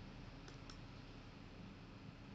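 Two faint computer mouse clicks about half a second in, a fifth of a second apart, advancing the presentation slide, over a low steady room hum.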